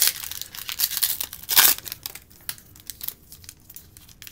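Shiny foil trading-card pack wrapper being torn open and crinkled by hand. The loudest rip comes about one and a half seconds in, followed by softer, scattered crinkles.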